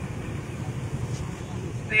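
Steady low rumble of road traffic, heard faintly under an open microphone between stretches of speech.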